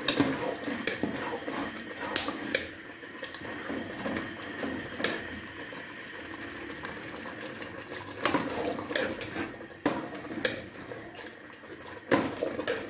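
Metal ladle stirring thick mustard-greens saag in an aluminium pressure-cooker pot while the saag is thickened with roasted flour over high heat. It scrapes through the greens, with irregular clicks and knocks against the pot's sides.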